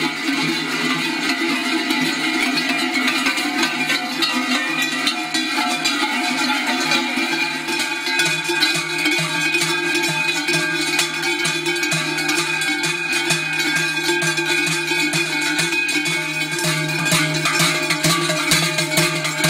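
Many large cowbells clanging together, the clanging getting denser about halfway through, over background music with plucked guitar.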